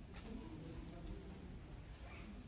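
Faint, distant voices in a large hall, low and indistinct, over a steady low rumble.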